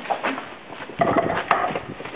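A single sharp knock about one and a half seconds in, over faint background voices.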